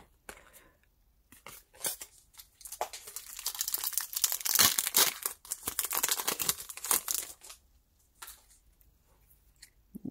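Foil Pokémon TCG booster pack wrapper being torn open and crinkled, a dense crackling run from about three seconds in until near the last few seconds, with a few scattered clicks before it.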